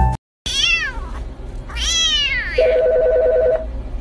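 A young tabby kitten meows twice, high-pitched calls that rise and fall. After them a telephone rings once for about a second with a steady warbling tone.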